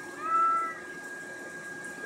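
A domestic cat meows once, a short call of about half a second, slightly arched in pitch, near the start.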